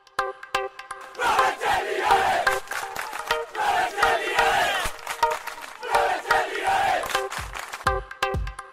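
A crowd chanting and shouting over music with sustained notes. It opens with a few sharp hits, and the crowd comes in about a second in.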